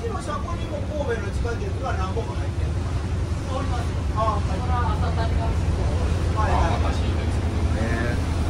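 Inside the cabin of a moving front-and-rear-door route bus: the diesel engine's steady low rumble and road noise as it drives, with passengers talking quietly in the background.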